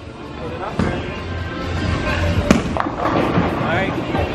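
Bowling alley noise: a steady din of chatter and background music, broken by sharp knocks of balls and pins. The loudest knock comes about two and a half seconds in.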